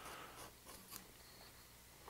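Faint scraping of a small hand gouge (a No. 11 veiner) being pushed through wood: a few short cuts in the first second, then almost nothing.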